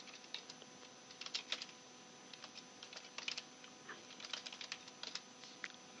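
Computer keyboard typing faintly in short bursts of a few keystrokes each, separated by brief pauses.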